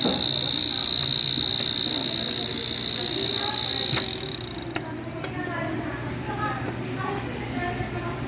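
Refrigeration vacuum pump running with a steady high whine and a low hum, then switched off about four seconds in. The whine cuts off once the manifold valve has been closed at the end of the evacuation.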